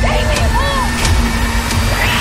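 Horror-trailer sound design: a loud, dense low rumble with a steady hum and about three sharp hits. A woman's short cry, rising and falling in pitch, comes early on.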